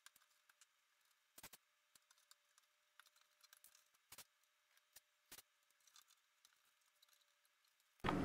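Near silence: the sound track is almost muted, with only a few very faint clicks.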